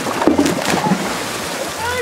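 A person falling from a tape bridge into a swimming pool: a big splash just after the start, then water churning and sloshing for over a second.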